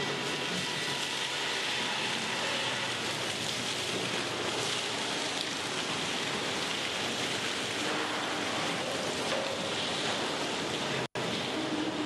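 Steady hiss-like background noise of a slaughterhouse floor where cattle are hoisted and bled, broken by a sudden brief dropout about eleven seconds in.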